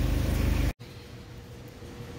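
A steady low machine hum with an even, layered pitch that cuts off abruptly under a second in. It gives way to quiet room tone with a faint steady high tone.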